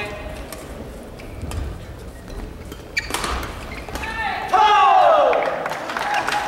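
Badminton rally: sharp racket strikes on a shuttlecock for about three seconds, then players' loud shouts as the point ends, the loudest a long falling cry about five seconds in.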